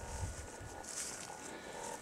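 Faint footsteps and rustling through brush, a few soft scuffs with the clearest about a second in.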